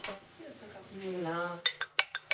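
Dishes and cutlery clinking on a glass tabletop as a table is set: one click at the start and a quick run of sharp clinks near the end. Just before the clinks there is a brief vocal sound with a falling pitch.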